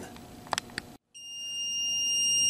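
Mug press timer alarm sounding one steady high-pitched tone that starts about a second in and grows louder, signalling that the 60-second heat-press cycle has finished. Two faint clicks come shortly before it.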